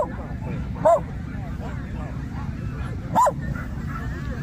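A dog barking: three sharp barks, one right at the start, one about a second in and one just past three seconds, with fainter barking from other dogs in the background.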